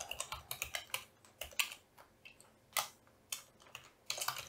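Typing on a computer keyboard: irregular keystroke clicks, a quick run in the first second, then a few scattered keys.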